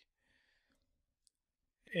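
Near silence in a pause of narration, with one faint, short click a little past a second in; the man's voice resumes at the very end.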